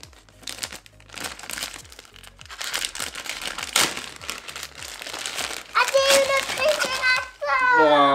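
A foil-lined plastic sachet crinkling and crackling as hands tear it open and rummage inside. Near the end a high child's voice calls out.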